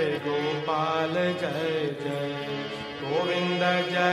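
Hindu devotional chanting (kirtan) over a steady drone, the voice gliding and bending in pitch.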